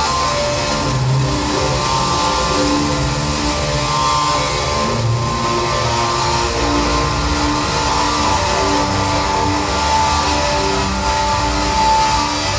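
Live experimental band music: held drone-like tones and low bass notes, changing pitch every second or so, at a steady loud level.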